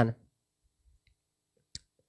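The tail of a man's spoken word, then near silence broken by a single short, sharp click near the end.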